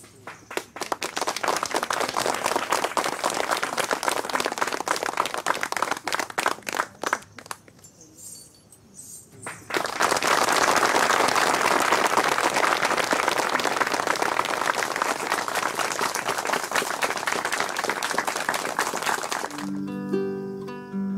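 Audience applauding. The clapping thins out briefly about eight seconds in, then comes back louder and keeps going.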